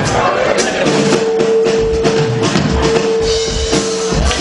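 Live rock-and-roll band starting a song: drum kit strokes under a long held note that comes in about a second in and holds almost to the end.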